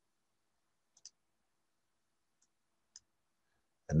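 A few faint computer mouse clicks, about one, two and a half, and three seconds in, with near silence between them. They are the clicks of picking and placing a component in the software.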